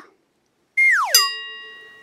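Edited-in transition sound effect: a quick falling whistle-like glide, then a bell-like ding that rings out and fades.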